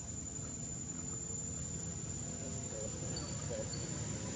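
Steady high-pitched insect trilling over a low background rumble, with a couple of short high chirps near the end.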